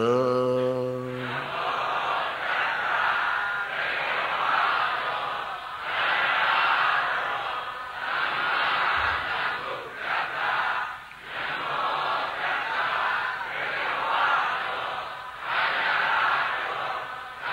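A Buddhist congregation chanting a recitation together, many voices in unison in phrases of about two seconds with short breaks. One low male voice holds a long note at the start before the group comes in.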